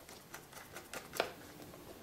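Faint small clicks and scrapes of hands and a small screwdriver working on a hard drive's metal cover as the screws under the label come out. There are about half a dozen sharp ticks, the loudest a little past a second in.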